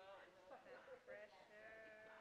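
Faint, high-pitched voices in the room, ending in one drawn-out vocal sound about a second and a half in.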